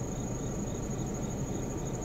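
Insects chirping steadily outside: a continuous high, evenly pulsing trill over a low background hum.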